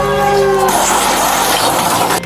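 Train horn blaring with a steady chord, cut into about two-thirds of a second in by a loud crashing rush of noise as the train strikes the small single-engine plane on the tracks and wreckage scatters.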